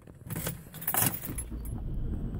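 Car keys jangling with a few light clicks, over a steady low car rumble that comes up about half a second in.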